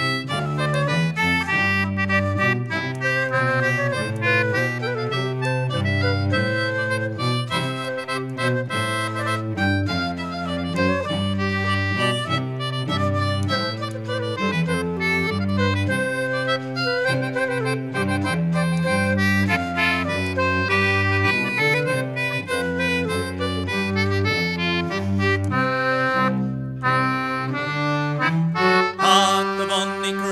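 Instrumental passage of an English folk tune played by a band, with no singing: a steady melody over a regular rhythm.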